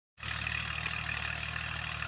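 Kubota L36 diesel tractor engine running steadily under load as it pulls a three-disc plough through sugarcane stubble: a steady, even drone.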